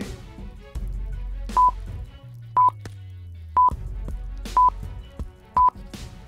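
Countdown timer sound effect: five short high beeps, one each second, over soft background music.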